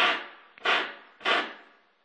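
A man blowing hard by mouth into an opened microwave oven's cavity, three short puffs about half a second apart, to clear out soot and sanding dust around the waveguide.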